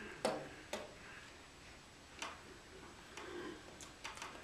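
A few short, sharp clicks at uneven spacing in a quiet room. The first one, just after the start, is the loudest.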